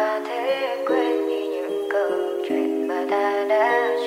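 Sped-up Vietnamese pop song: a high, bending lead melody over sustained chords.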